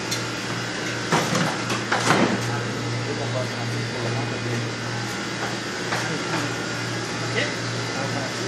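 Steady low hum and noise of commercial kitchen machinery in a dishwashing area, with a few short clatters about one and two seconds in.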